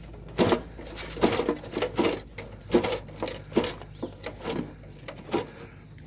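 A rat caught in a rusty wire-mesh cage trap, with irregular short clicks and rattles from the trap.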